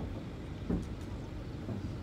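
Steady low rumble of an idling cattle transport truck, with one brief thud about two-thirds of the way in.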